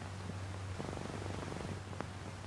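Steady low electrical hum and hiss of an open microphone, with a brief rapid pulsing buzz about a second in that lasts about a second.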